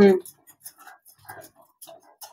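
A short spoken syllable right at the start, then faint, irregular scrapes and ticks of a metal spatula stirring thick carrot halwa in a kadai.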